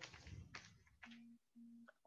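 Two short, faint, low electronic beeps about half a second apart, over near silence.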